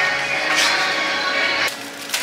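Background music playing steadily, dropping suddenly in level near the end.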